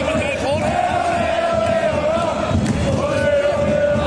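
Football crowd in a stadium chanting in unison, many voices holding long sung notes over the general noise of the stands.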